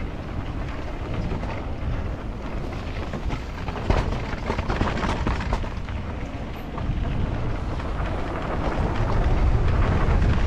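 Wind rumbling on a helmet or chest camera's microphone as a mountain bike rolls down a dirt trail, with tyre noise and rattling knocks from the bike over rocks about four to six seconds in. The rumble grows louder over the last few seconds as the trail steepens.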